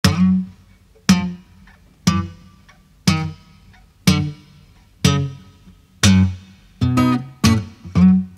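Acoustic guitar plucking single low bass notes about once a second, each left to ring and fade, with a quicker run of notes near the end.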